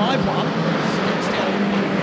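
Engines of a pack of saloon stock cars racing together, a steady drone.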